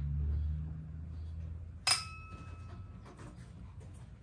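A single sharp metallic clink about halfway through, ringing briefly like struck metal, as metal knocks against the bare steel inner door of a pickup during work on the door speaker's screw. Under it, a low steady hum fades away over the first half.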